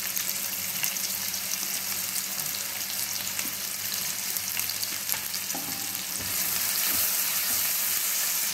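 Sliced shallots, garlic and tomato sizzling in hot oil in a stainless steel kadai: a steady hiss that grows a little louder about six seconds in.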